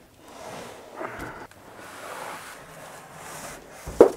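Cardboard box rustling and scraping as it is lifted and slid off the packed machine, with a few light knocks.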